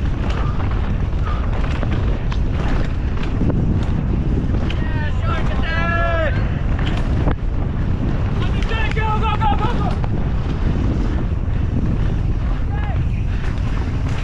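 Wind rushing over the camera and a mountain bike rattling and knocking as it descends rough, rooty dirt trail at race speed. Spectators beside the track shout encouragement twice in the middle.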